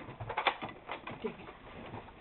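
A large cardboard box being shifted and stood up on carpet: a scatter of soft knocks and scuffs, mostly in the first second.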